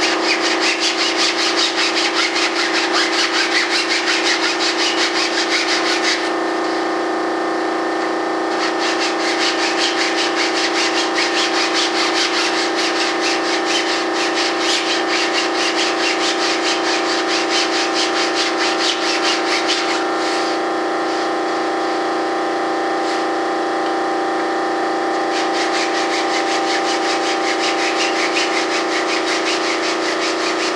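Electric belt sander running with a steady motor hum while wood is pressed against the belt, making a dense, fast rasping. The rasping eases off for a couple of seconds about six seconds in, and briefly again around twenty seconds, while the motor keeps running.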